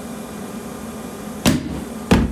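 Home-built burner tube going off with one sharp, explosive bang about a second and a half in, over a steady blower noise. The failed venturi isn't mixing fuel and air properly, so the combustion explodes and flashes back up the pipe instead of burning smoothly.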